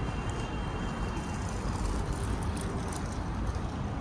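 Steady outdoor city background noise with a low rumble, with a faint thin high tone during the first second and a half.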